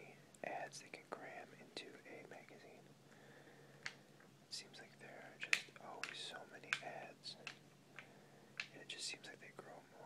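Close-miked whispering voice, breathy and without pitch, with a pause around the third second, and a scattering of sharp little clicks throughout, the loudest about halfway through.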